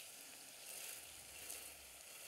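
Faint, steady sizzle of shallots and garlic sweating in olive oil in a stainless steel sauté pan as risotto rice is poured in.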